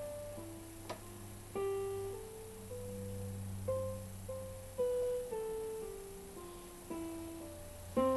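Electronic keyboard playing a C major scale slowly, one note at a time, about two notes a second. It climbs an octave and then steps back down, over a low steady hum.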